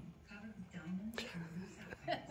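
Quiet speech: a voice talking softly, with one sharp click a little over a second in.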